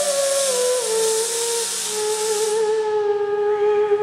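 Moog Etherwave theremin sliding down in steps to a low held note with a slight vibrato, over the hiss of two industrial robots' welding arcs, which fades out about two and a half seconds in as the arcs stop.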